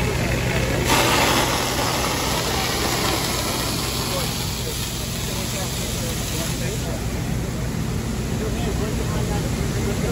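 Two-inch handlines with 1 1/16-inch solid bore tips flowing water at about 250 gallons a minute each, making a steady rushing hiss over the low, steady drone of the pumping engine. A brighter, louder hiss comes in about a second in and eases off around seven seconds.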